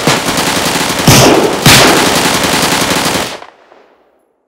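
Rapid, continuous gunfire, a dense volley of shots with two louder blasts about one and two seconds in, dying away after about three seconds.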